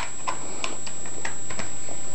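Light, sharp ticking clicks, about three a second, over a steady high-pitched whine.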